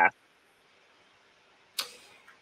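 A man's voice ends a question, then about a second and a half of silence, then a short sharp breath-like whoosh near the end, a sharp intake of breath before an answer.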